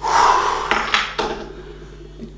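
A man's heavy, breathy exhale after a hard set of exercise, fading out over under a second, followed by two small clicks.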